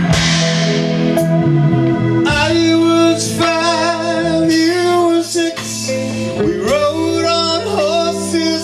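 A rock band playing live, with electric guitar over bass, keyboards and drums. A wavering, bending melody line comes in about two seconds in and carries on.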